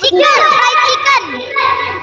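Children's voices speaking and calling out over a video call.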